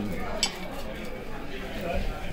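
Low talk from people at the table, with a single sharp clink of cutlery against a plate about half a second in.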